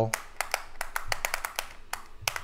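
Pins of a ShengShou magnetic clock puzzle being pushed in and out, giving a quick, irregular run of sharp clicks as they snap into place.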